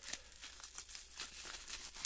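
Plastic bubble wrap crinkling faintly, with a few small clicks, as a wrapped item is pulled from a padded mailer and handled.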